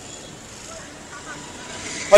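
Faint steady background noise with a low hum of road traffic.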